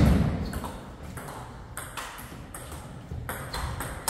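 Table tennis rally: the celluloid ball clicking sharply off the rubber paddles and the table in a quick back-and-forth, a hit or bounce every fraction of a second. It opens with a loud thump.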